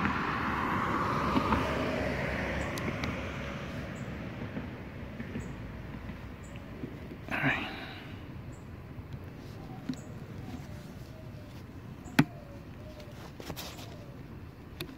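A car passing on the road alongside, its tyre noise fading over the first few seconds. Then a quieter steady outdoor hiss, with a short burst about seven seconds in and a sharp click near the end.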